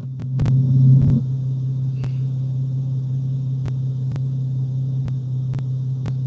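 A steady low hum, with sharp clicks scattered through it.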